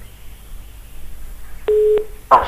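A telephone line tone on the phone-in line: a single steady, mid-pitched beep of about half a second, starting near the end, after low line hiss.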